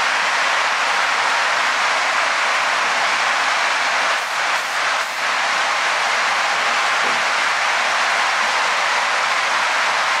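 A loud, steady rushing hiss that holds even throughout, dipping briefly twice around four and five seconds in.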